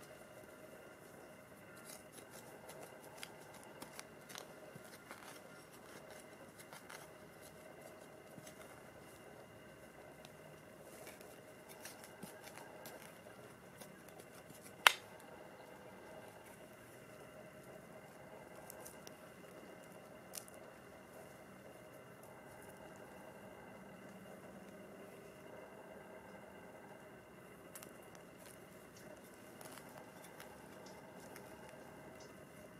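Quiet snipping and scraping of small hand tools cutting through lawn turf and soil, with scattered small clicks and one sharp, much louder click about halfway through.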